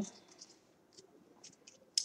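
Trading cards being shuffled in the hand, giving a few faint, short ticks as the cards slide against each other.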